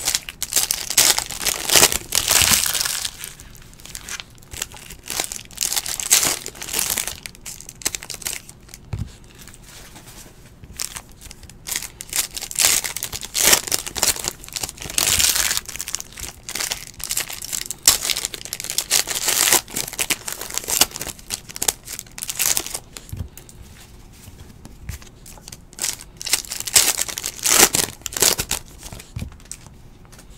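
Foil trading-card pack wrappers crinkling and tearing as the packs are ripped open by hand, in repeated bursts with quieter gaps between them.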